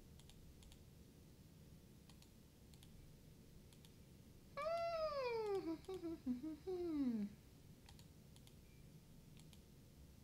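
A drawn-out vocal call, starting a little before the middle and falling steadily in pitch for about two and a half seconds before breaking into a few shorter downward pieces. Faint computer mouse and keyboard clicks sound around it.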